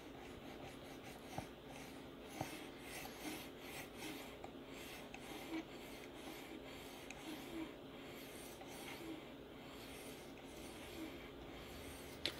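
Faint, soft rasping of a resin-bonded diamond sharpening stone being stroked by hand along a steel knife edge, one light stroke after another with small irregular scrapes and ticks.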